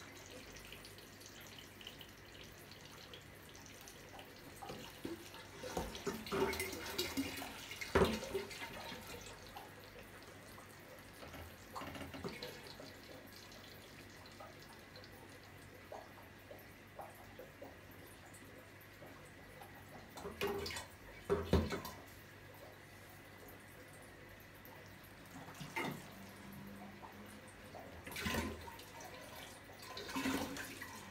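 Water trickling and sloshing as an aquarium gravel siphon draws water and debris out of the tank through a plastic hose, with a few sharper splashes, the loudest about eight seconds in and around twenty-one seconds.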